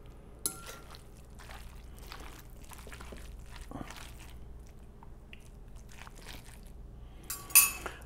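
A fork and a silicone spatula mix a wet, loose ground-beef meatloaf mixture in a glass bowl. Soft squishing and scraping are dotted with light clinks of the fork against the glass, the sharpest about half a second in and again near the end.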